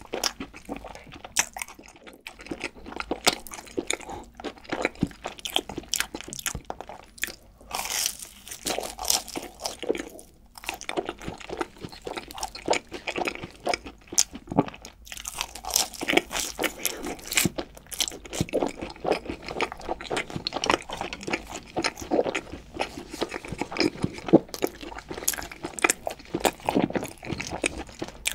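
Close-miked biting and chewing of crispy cheese-coated fried chicken: a dense run of sharp crunches throughout.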